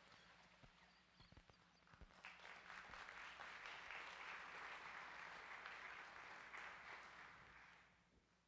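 Faint applause from a congregation, starting about two seconds in and dying away near the end, with a few soft knocks before it.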